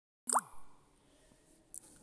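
A single short rising 'bloop' plop about a third of a second in, sweeping quickly upward in pitch, followed by faint room noise and a small click near the end.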